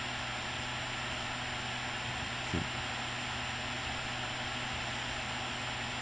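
Steady hiss with a faint low hum underneath, unchanging throughout; one short spoken "okay" about halfway through.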